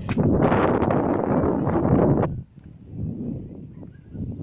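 Gusty wind buffeting a phone's microphone: a loud rushing rumble for a little over two seconds that drops off abruptly, then lighter buffeting.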